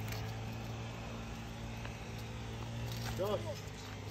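Steady low hum from a running motor, with a brief faint voice about three seconds in.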